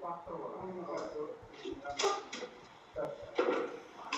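Indistinct talking, with a couple of sharp clicks about two and three seconds in.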